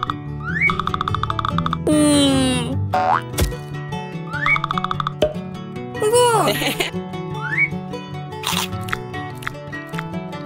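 Cartoon background music with comic sound effects: short rising whistle-like chirps recur, a loud falling glide comes about two seconds in, and a springy boing comes about six seconds in.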